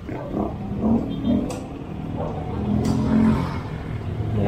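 Truck engine running amid street traffic, with a low rumble that swells about three seconds in, along with a couple of light knocks.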